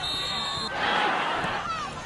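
A referee's whistle blows a steady high note, stopping under a second in, to blow the play dead after an incomplete pass. Then comes a short burst of crowd noise from the sideline.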